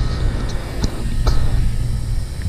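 Wind buffeting an outdoor camera microphone: a loud, uneven low rumble, with a few light clicks from the camera being handled.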